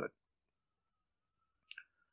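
Near silence in a pause of the narration. A small mouth click, a lip or tongue smack, comes twice about three-quarters of the way through, just before the narrator speaks again.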